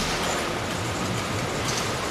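A steady mechanical rumble, even and unbroken, with no clear pitch or rhythm.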